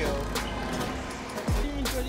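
Background music with a beat: a sharp clap shortly after the start and again near the end, and a deep bass note that slides down in pitch about one and a half seconds in.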